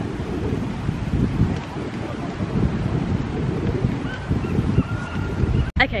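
Wind buffeting the camera microphone outdoors, an uneven low rumble.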